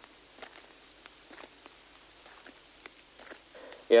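Faint footsteps of a hiker walking along a trail, irregular light steps, with a light wind. No birds or insects can be heard: the forest is silent.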